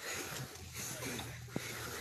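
Footsteps and clothing rustle of a group walking along a dirt forest path, an unsteady noisy shuffle with a few light scuffs.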